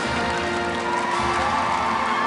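Studio audience laughing and cheering over background music holding steady notes.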